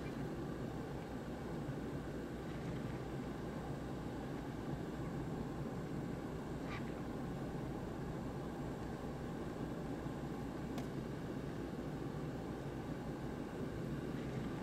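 Steady low background rumble, with two faint short clicks partway through.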